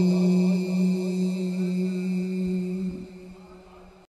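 A steady low hum held on one pitch, with faint traces of a voice above it, fading away over the last second.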